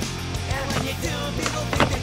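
Skateboard wheels rolling on a concrete slab, with a couple of sharp clacks of the board, the loudest near the end, under background music with a steady bass line.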